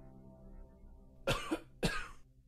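A person coughs twice near the end, about half a second apart, loud against the music. Underneath, a string quartet's low held chord is fading out.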